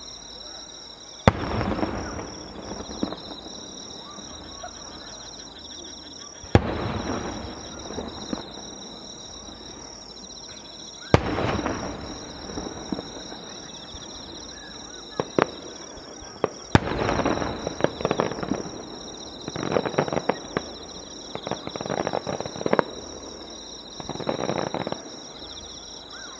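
Aerial firework shells bursting: four sharp bangs about five seconds apart, each trailed by crackling, then a dense run of crackling reports in the second half. A steady high-pitched chirping of insects runs underneath.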